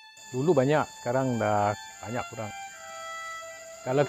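A man speaks in short phrases over a steady, high-pitched insect drone of crickets or cicadas. The speech stops about two and a half seconds in, and the insects carry on alone until the speech resumes at the end.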